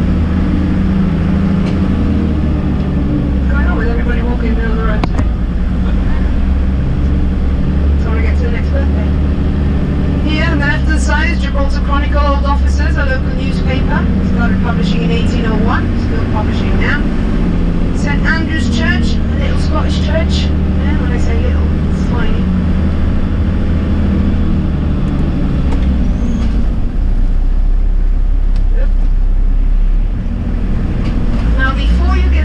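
Steady low engine and road rumble heard from inside a moving minibus, its low drone changing near the end. Indistinct voices talk over it in the middle stretch.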